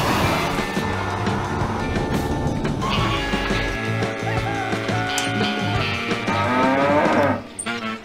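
Background music, with a cow mooing once near the end, a call lasting about a second.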